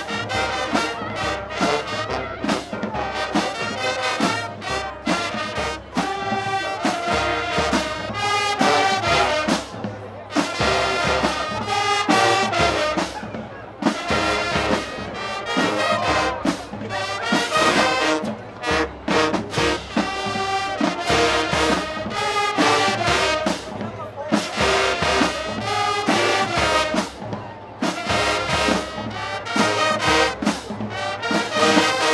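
High school marching band playing a brass-heavy pop arrangement, trumpets, trombones and sousaphones, over a steady drum beat.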